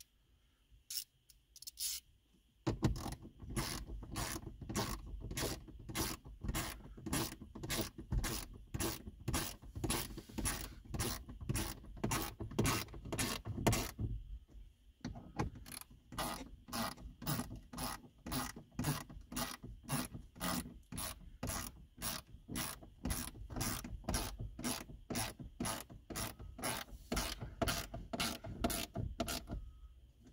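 Hand ratchet wrench driving in two fasteners: a steady clicking at about three strokes a second for some eleven seconds, a brief pause, then a second run of about fourteen seconds.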